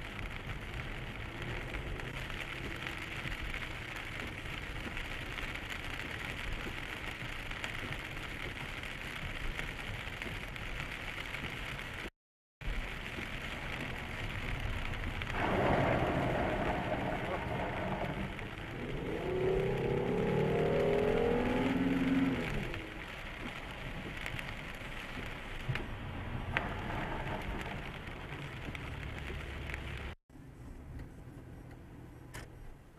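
Steady tyre and road noise of a car driving on rain-soaked, flooded pavement, heard from inside the cabin. After a cut, a loud rush of water spray rises about halfway through as the car ploughs through deep standing water, followed by a few seconds of a louder pitched sound.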